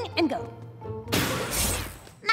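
A cartoon sound effect: a sudden burst of harsh noise starting about a second in and lasting just under a second, over light background music.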